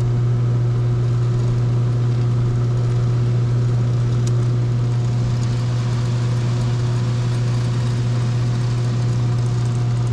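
Evaporative (swamp) cooler's newly installed blower motor driving its belt-driven blower: a steady, loud hum with faint higher tones above it. This is the test run of the new motor, and it runs evenly with no knocking or rattling.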